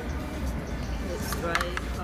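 Background music with voices.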